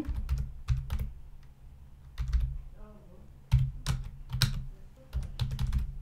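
Typing on a computer keyboard: irregular key clicks, each with a dull low thud, in quick runs broken by short pauses.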